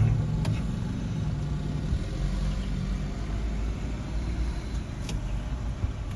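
Aston Martin sports car's engine running as it pulls away, a low note that weakens after the first second or so, over a steady low vehicle rumble.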